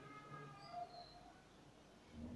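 Near silence: room tone, with a few faint high chirps in the first half.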